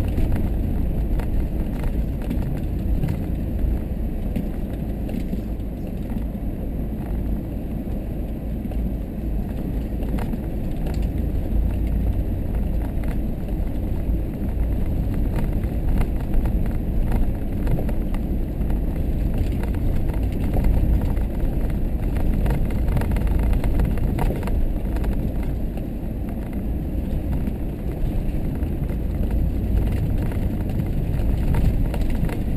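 Vehicle interior noise while driving slowly over a rough, rutted dirt track: a steady low rumble of engine and tyres, with scattered small knocks and rattles from the bumps.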